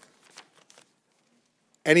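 A pause in a man's speech: a few faint, short rustles or clicks in the first second, then near silence until his voice comes back near the end.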